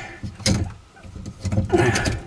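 PEX tubing being cut with a hand PEX tube cutter: a sharp click about half a second in, with rubbing and handling noise around it.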